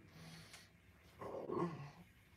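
A quiet pause after the electric guitar stops, with a man's brief, soft, low wordless vocal sound about halfway through.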